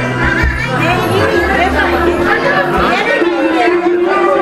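Several people talking at once around a table, over loud background music with a steady bass line.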